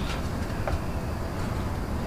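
Steady low rumbling noise, with a faint tick a little before the middle.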